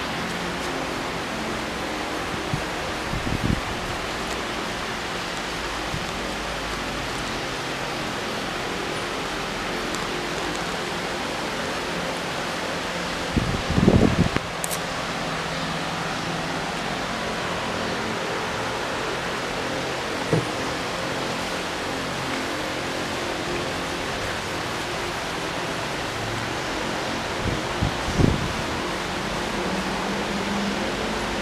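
Steady, even hiss of background room noise, broken by a few brief low thumps; the loudest comes about fourteen seconds in, and a smaller one near the end.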